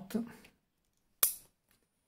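A man's voice trails off, then a single sharp click about a second later.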